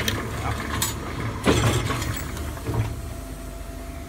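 Kluge 14 x 22 platen press running while embossing pocket folders: a steady drone of the running press, with a sharp clack from the press cycle about a second and a half in and lighter clicks around it.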